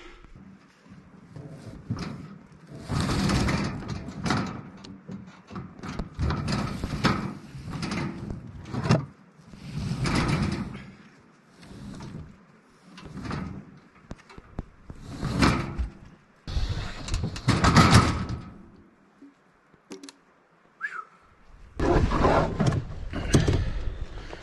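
Logs being pulled off a metal trailer bed: rough wood scraping and sliding along the metal, with knocks as they drop, in about six separate bouts of a second or so each.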